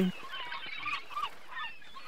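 Seagulls calling in the background: several short, faint cries.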